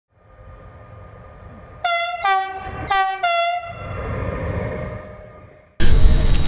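Train horn sounding four short blasts in two high-low pairs over the low rumble of a passing train, which then fades away. Near the end the sound cuts abruptly to a louder rushing outdoor noise.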